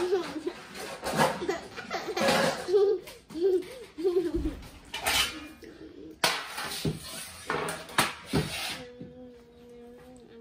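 A child giggling, then metal baking sheets set down on a wooden table with several sharp knocks and clatters.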